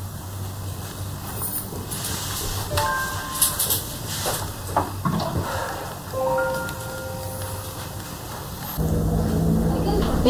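Soft knocks and clicks of a glass being handled at a bottled-water dispenser, with a few held music notes about three seconds in and again past six seconds. Near the end a low hum comes up.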